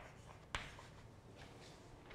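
Chalk on a blackboard: a sharp tap about half a second in, then a few faint scratching strokes as the writing finishes.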